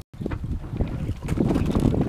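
Wind buffeting the microphone on an open boat at sea: a loud, rough, uneven low rumble that cuts in just after a brief dropout at the start.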